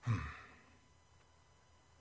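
A man's short sigh right at the start, fading within about half a second.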